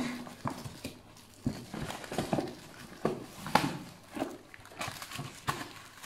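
Cardboard boxes and firecracker packets being handled inside a cardboard carton: scattered light knocks and rustles at an irregular pace.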